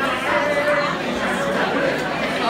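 Several people talking at once in a club room, a mix of overlapping voices with no music playing.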